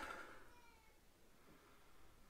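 Near silence: room tone, with the tail of the last spoken word dying away in the first half second and a very faint brief falling tone soon after.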